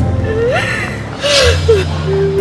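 A woman crying, with a sharp sobbing gasp a little past the middle, over slow background music with steady low notes.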